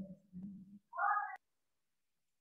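A voice sounding indistinctly over a video call, then a short high-pitched cry about a second in that cuts off suddenly.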